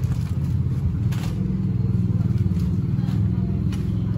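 Steady low rumble of a running motor vehicle.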